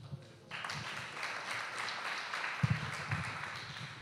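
Audience applauding, starting about half a second in and going on steadily.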